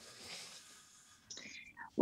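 Quiet pause filled with faint breathing and soft whispered mouth noises, with a few breathy sounds just under two seconds in, just before the next words are spoken.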